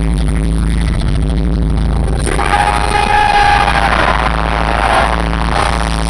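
Loud stage-entrance music over a concert PA, recorded from the audience, with a steady low drone; about two seconds in, a brighter, noisier layer comes in over it.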